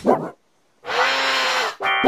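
A held animal-like cartoon cry lasting about a second, after a brief sound and a moment of dead silence. It is pitch-shifted and layered into several pitches at once by the 'G Major' edit effect.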